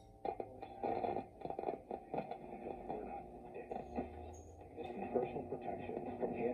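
A 1925 Atwater Kent Model 20 Compact TRF radio receiver playing through its speaker as its tuning dials are turned: muffled snatches of broadcast voices and music with crackles, coming in about a third of a second in and fading in and out as a station is tuned.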